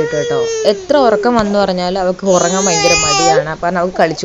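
A baby crying, loudest and highest-pitched for about a second past the middle, with an adult's voice going on alongside.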